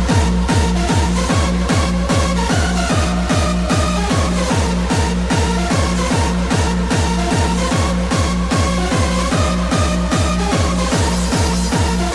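Techno played in a live DJ set: a fast, steady four-on-the-floor kick drum, each beat dropping in pitch, under a synth melody that rises and falls.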